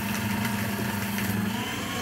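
Fellowes nine-sheet cross-cut paper shredder's motor running with a steady hum, just after cutting through a couple of envelopes. Its pitch steps up slightly near the end.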